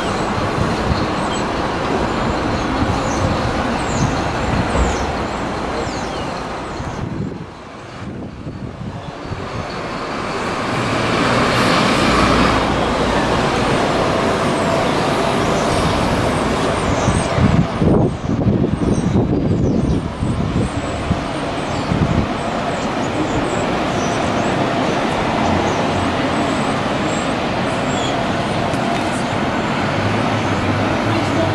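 Street traffic noise: road vehicles passing steadily, with one swelling up about twelve seconds in and a few sharp louder noises a little later.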